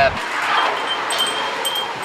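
A small metal chime tinkling, a few light high rings, as a shop door is opened.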